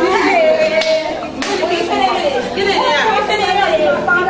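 Several people's voices at once, talking over one another.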